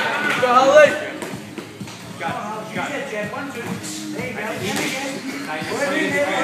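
Voices of spectators and cornermen shouting in a large hall: one loud shout in the first second, then a quieter mix of voices calling out.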